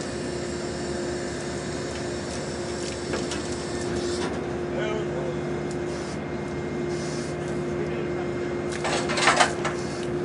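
Steady hum of the ship's deck machinery, with a second, lower hum joining about halfway. Near the end comes a short burst of metal knocks and rattles as the steel Shipek grab is set down into its stand.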